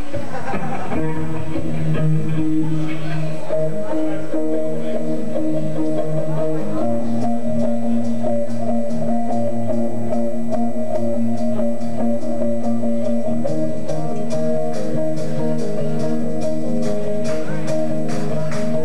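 Live rock band starting a song: electric guitar holding sustained chords, changing chord about seven seconds in and again around thirteen seconds. Drum and cymbal hits come in and grow busier toward the end.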